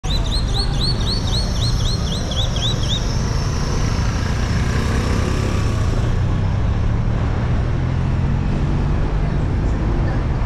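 Steady low rumble of a vehicle moving along a city street. Over the first three seconds a bird chirps rapidly, about four short chirps a second.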